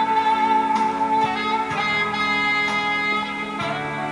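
Alto saxophone playing long held notes over soft band accompaniment in a live concert recording, moving to a new note a little under halfway through.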